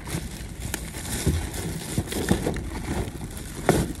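Wind buffeting the microphone, a steady rumbling noise, with crinkling and knocking from plastic grocery packaging being handled; several sharp clicks, the loudest near the end.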